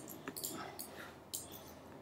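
Faint, scattered clicks of a computer keyboard and mouse, about six or seven short taps in two seconds.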